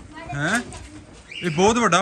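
A caged bird gives one short, low call that rises in pitch about half a second in; a man starts speaking near the end.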